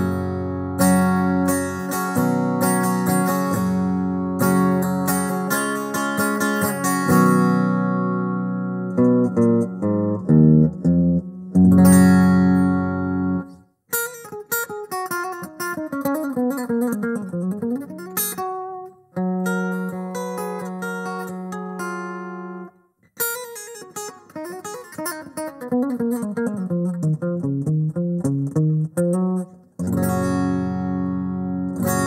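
Electric guitar with a single EMG humbucker, played through the Valeton GP-100's AC Sim 1 acoustic guitar simulator so that it sounds like an acoustic guitar. It strums chords for about the first half, then plays picked single-note runs that fall in pitch, with short pauses between phrases.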